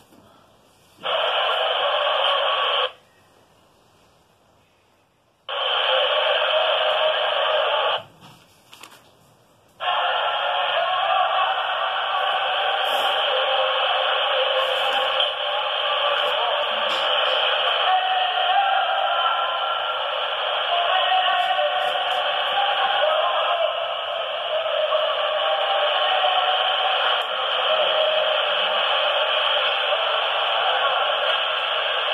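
Muffled, tinny audio track of an old videotape playing back, with a thin radio-like quality. It cuts in and out twice early on, then runs steadily from about ten seconds in.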